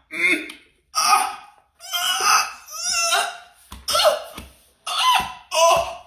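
A man's wordless crying-out in about seven short bursts with brief silences between, some falling in pitch, like exaggerated sobbing and gasping.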